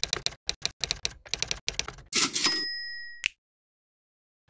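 Typewriter sound effect: a quick run of keystroke clicks, then a typewriter bell ding that rings on for about a second and is cut off by one sharp click.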